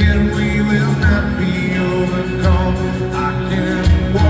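Live band music from an arena stage: strummed acoustic guitar, keyboard and a kick drum beating steadily under a male lead vocal.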